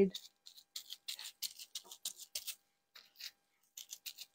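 Crumpled bubble wrap dabbed against a painted block, a faint, irregular crinkling and tapping as thinned paint is pressed on for texture.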